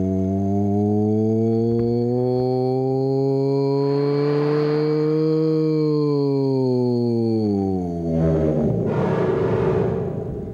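A man's voice holding one long, low droning hum that rises slowly in pitch and sinks back down, fed into a video synthesizer. About eight seconds in the note breaks into a rougher, breathy noise.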